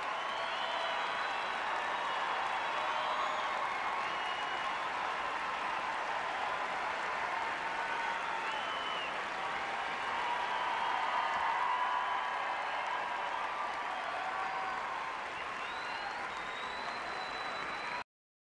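Arena crowd applauding steadily, with scattered cheers and high cries throughout, swelling a little in the middle.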